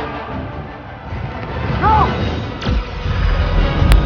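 Film soundtrack: dramatic score over a heavy low rumble, with a fast falling whoosh a little before the end and then a sharp crash as alien dropships slam into the ground.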